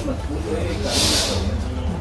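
Background voices of people talking over a steady low hum, with a short, loud hiss about a second in.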